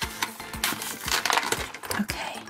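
Stiff clear plastic blister packaging crackling and clicking in the hands as it is pulled away from its cardboard backing card, in a run of irregular sharp clicks.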